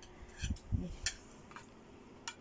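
A few light clicks and a soft thump of a cake knife against a plate as a slice of cake is set down on it.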